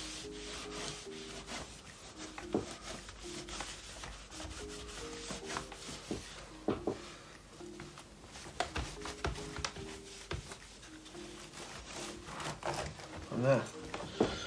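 A dry cloth rubbing over a laptop's screen and plastic keyboard deck in repeated short, irregular wiping strokes.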